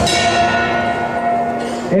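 A boxing ring bell struck once to start a round, ringing out and fading over about two seconds.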